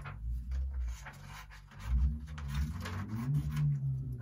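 Scissors cutting a piece off a sheet of paper, with the paper rustling as it is handled: a run of short, irregular snips and crinkles.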